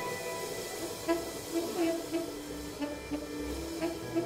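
A quiet, sparse passage of free jazz improvisation: scattered short pitched notes in the low-middle range, with a few light taps between them.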